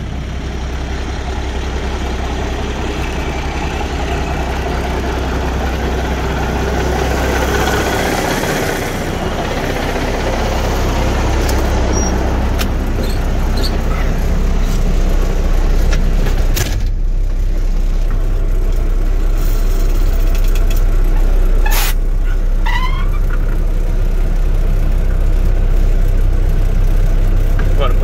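Cummins NTC400 inline-six diesel engine idling steadily with a low, even drone. A few short clicks and squeaks come in the second half.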